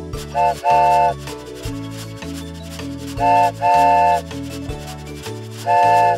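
Cartoon toy steam-train whistle sounding as a chord, a short toot then a longer one, twice, with a third toot near the end. Bouncy children's background music with a bass line plays under it.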